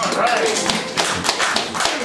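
A small audience clapping after the band's last note, a scattered patter of hand claps, with a brief voice calling out early on.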